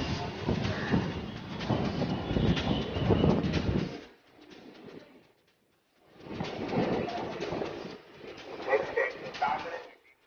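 Suburban electric multiple-unit (EMU) train moving out along the platform, a steady rumble with rattling. The sound drops away almost to silence for about two seconds in the middle, then returns, with a few short pitched calls near the end.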